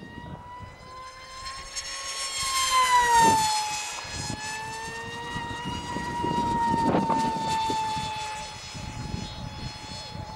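Multiplex FunJet RC model plane's electric motor and pusher propeller whining in flight, one steady high tone. It grows louder and its pitch drops a little about three seconds in as the plane passes, and it swells again around seven seconds.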